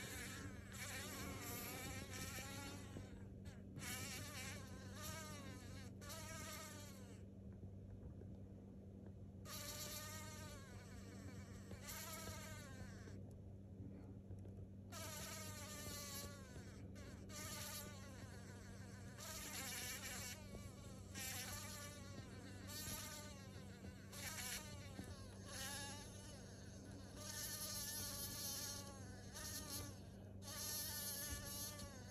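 A large metallic-green blowfly buzzing in broken bursts, its pitch wavering up and down, as it struggles in the grip of a small spider. Its buzzing stops for a second or two several times between bursts.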